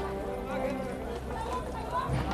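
Street ambience: people talking in the background and animal hooves clip-clopping on the ground.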